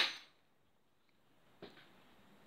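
A sharp click at the very start that dies away within a third of a second, then near silence, broken by a softer tap about a second and a half in.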